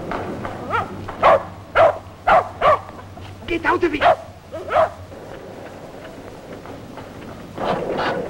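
A dog barking: about ten short barks over roughly four seconds, some in quick clusters.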